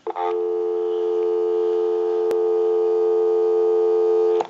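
Continuous North American dial tone, a steady two-note hum, heard from the Western Electric 302's handset earpiece on a live line. A single sharp click sounds about halfway through.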